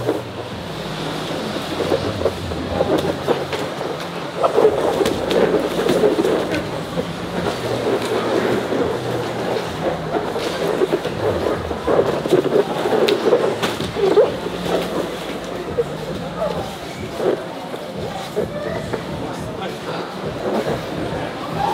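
Grappling on gym mats: irregular scuffling and occasional thuds of bodies on the padding, over background voices and a steady low hum.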